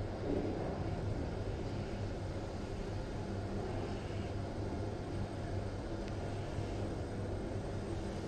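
Toshiba passenger lift cab travelling upward, heard from inside the car: the steady ride noise of the moving lift, a low hum with a rumble.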